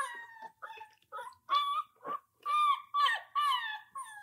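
German Shorthaired Pointer puppy whining: a run of about eight short, high whimpers, several of them falling in pitch at the end.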